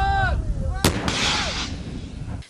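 A shoulder-fired rocket launcher fires once, about a second in: a sharp bang followed by a hissing rush lasting under a second. A man's voice calls out briefly just before the shot.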